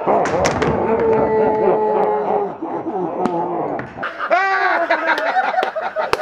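Men yelling and laughing, with a few sharp knocks near the start.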